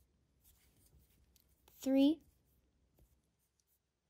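Faint scratchy rustling and small ticks of a crochet hook drawing yarn through stitches as a cable row is worked, with a voice counting "three" about two seconds in.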